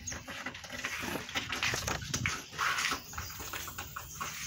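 Day-old kittens mewling.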